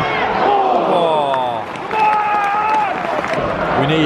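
Football stadium crowd: supporters shouting and chanting in the stands, with several voices sliding down in pitch and then a long held shout.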